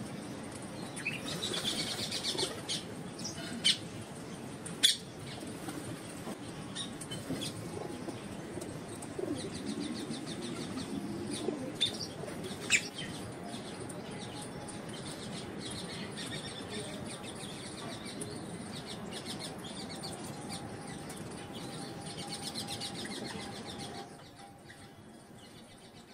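Rose-ringed parakeet preening in its cage: soft feather rustling with patches of fine rapid ticking and three sharp clicks, the loudest about thirteen seconds in.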